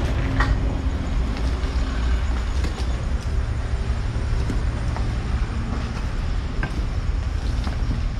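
Steady low rumble of vehicle engines and road traffic, with a few faint crunching footsteps on loose brick rubble.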